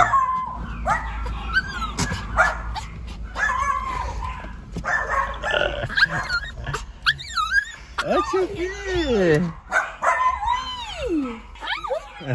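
A small Pomeranian-type dog whining and yipping over and over, its high cries rising and falling, with a few short barks mixed in: the dog is excited at arriving at its daycare.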